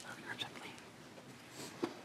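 Faint, low voices in a committee hearing room, with a soft click or two near the end.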